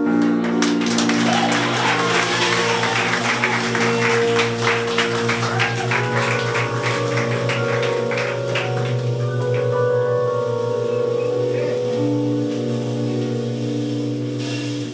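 Instrumental band music: held chords over a steady bass line with fast drumming, the drumming thinning out about seven seconds in.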